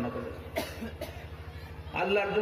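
A man coughs twice into a microphone, the coughs about half a second apart, over a steady low hum.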